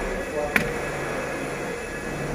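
A single sharp click about half a second in: a plastic clip letting go as the inner trim cover at the side-mirror mount is pried off the car door with a plastic pry tool. A steady background hum runs under it.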